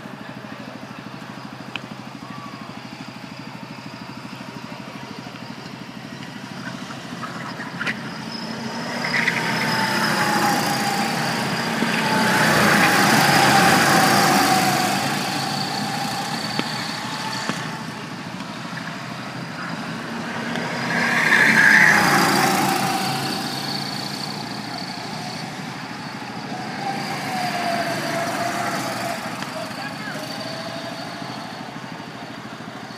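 Go-kart engines running on the track, their pitch rising and falling with the throttle. The sound swells loudest as karts pass close by, about twelve seconds in and again just after twenty seconds, then fades as they move away.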